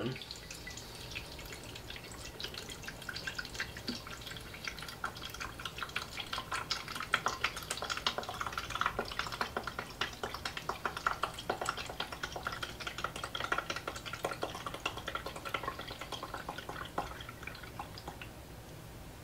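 Black UV ink glugging and dripping out of an upturned bottle into a UV printer's ink tank. It is a rapid, uneven run of small gurgles and drips that builds over the first few seconds and thins out near the end.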